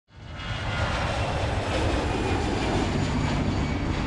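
Aircraft engine rumble that fades in quickly at the start and then holds steady. A low held tone, the start of the intro music, comes in about three seconds in.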